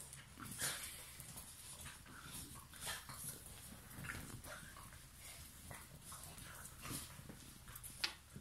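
Young puppies, about seven weeks old, playing together on a tiled floor: faint, scattered scuffles and short clicks, with occasional small puppy noises.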